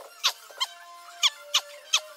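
A quick series of short high squeaks, six or so in two seconds, each falling sharply in pitch.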